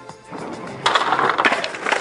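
Skateboard wheels rolling on a plywood ramp under a dog's weight: a rumbling roll that gets loud about a second in, with background music underneath.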